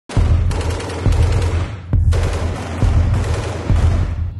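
Rapid automatic rifle fire, the shots so close together they run into two long bursts with a brief break near the middle, over a low throbbing beat about once a second.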